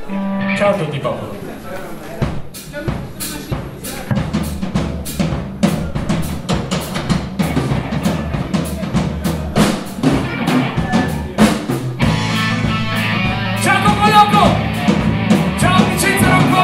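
Live rock band playing: drum kit keeping a steady beat with bass and electric guitars, the full band coming in louder about twelve seconds in.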